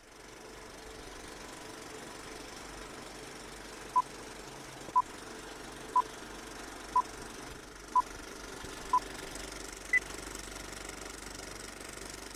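Vintage film-countdown sound effect: a film projector's steady rattling whir. From about four seconds in a short beep sounds once a second, six at one pitch, then a seventh, higher beep.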